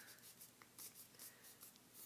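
Faint rustling and crinkling of a sheet of paper being handled and folded by hand, a few soft crackles.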